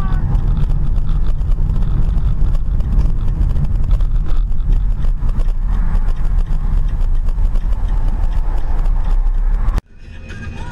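Steady low rumble of road and engine noise inside a moving car, picked up by the dashcam microphone; it cuts off abruptly near the end.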